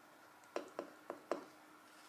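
Four short, faint ticks about a quarter of a second apart: a plastic vinyl scraper being pressed hard over contact-paper transfer tape on a wooden sign blank.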